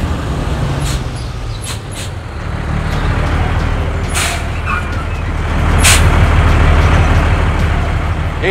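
Heavy truck engine running with a deep, steady rumble that grows louder about six seconds in, broken by several short sharp hisses.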